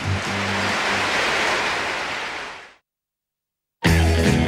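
A hiss of noise like static, at first over a few low bass notes from the music, fading out over about two and a half seconds. Then about a second of silence before a guitar music track starts near the end.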